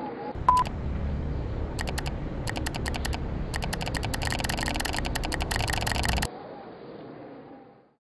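A short beep about half a second in, then rapid clicking over a low rumble: a few clicks at first, growing into a fast, dense run. The clicking and rumble stop suddenly about six seconds in, and the remaining background fades out.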